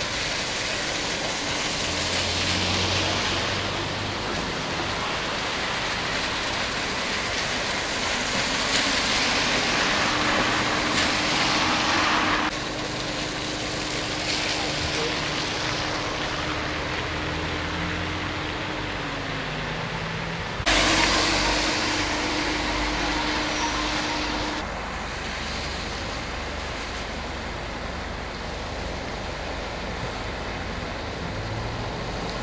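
Road noise of a vehicle driving through town streets: a steady rushing noise under a low hum. The noise changes abruptly about twelve and twenty-one seconds in.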